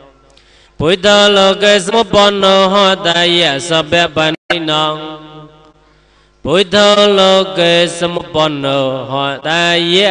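A man chanting Buddhist verses in a drawn-out, melodic sing-song. There are two long phrases with a quiet pause of about two seconds between them.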